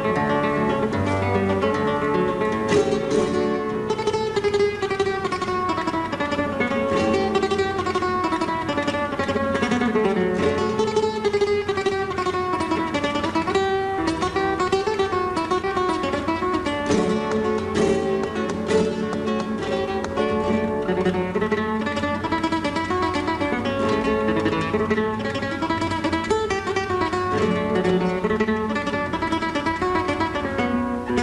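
Solo flamenco guitar played por zapateado: a continuous stream of quickly plucked melodic runs and chords, with no let-up.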